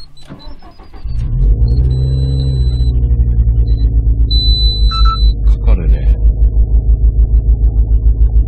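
Subaru WRX STI's turbocharged EJ20 flat-four is cranked and catches about a second in, then idles with a regular pulsing beat. High steady electronic beeps sound twice over the idle.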